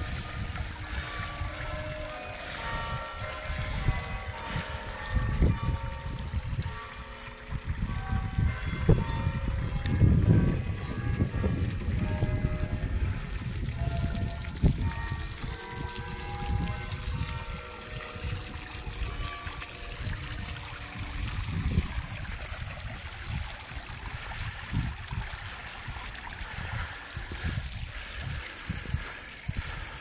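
Small tiered stone fountain, its jet splashing and trickling steadily into the basin. Faint music of held notes runs through the first two-thirds, over a low uneven rumble.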